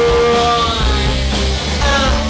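Live rock band playing: electric guitars and drums, with a note held over them near the start.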